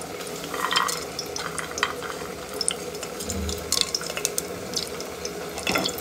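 Whole spices and a bay leaf dropped into hot oil in an aluminium pressure cooker, sizzling with irregular crackles and pops.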